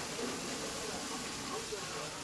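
Steady hiss of water or steam as firefighters hose down a burnt-out railway coach, with people talking in the background.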